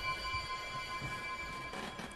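Eerie background score: a sustained drone of several high, steady held tones.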